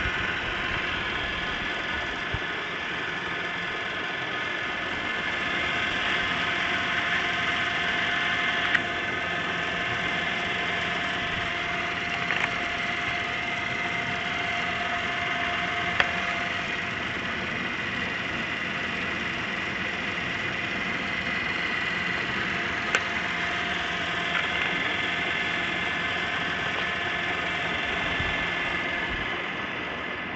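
6x5-inch DC solar water pump running steadily: an even motor whine and hum, with a few sharp clicks along the way.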